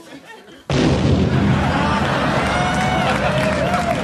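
A huge explosion goes off suddenly about two-thirds of a second in and carries on as a loud, deep rumble. A studio audience cheers and whoops over it.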